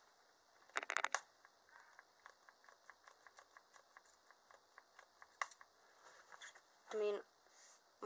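A small pump spray bottle squirted in a quick cluster of sharp bursts about a second in, followed by faint, evenly spaced light ticks of handling. A short vocal sound from a woman near the end.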